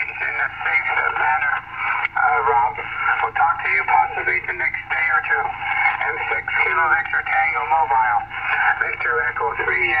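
A man's voice received over single-sideband on 40 metres, coming through a Yaesu FT-897 transceiver's speaker with the thin, narrow sound of an SSB signal.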